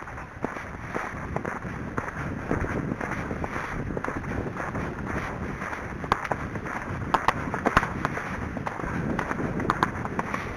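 A horse's hooves striking a dirt woodland trail under a rider, over a steady rustling noise. A run of sharper clicks comes between about six and eight seconds in.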